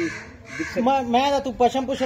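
A person talking, with short harsh calls from a bird in the background.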